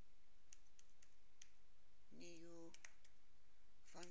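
A handful of scattered computer keyboard keystrokes, single sharp clicks with irregular gaps, as code is typed.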